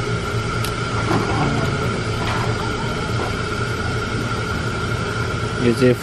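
Steady rushing noise of a crab steamer giving off steam, even and unbroken throughout, with a faint constant tone running through it. Brief murmured voices come in about a second in and again at the end.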